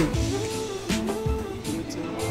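Background music with a guitar playing over a regular beat.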